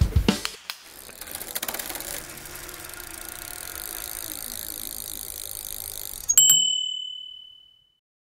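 Sound effect of a rolling bicycle: the freewheel ticks and then whirs steadily for about five seconds. About six seconds in, a single bright bicycle-bell ding rings out and fades over a second and a half.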